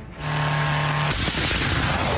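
Shahed-type attack drone launching at night: a loud, steady rushing roar of its take-off booster sets in just after the start, with a low steady engine hum under it for about the first second.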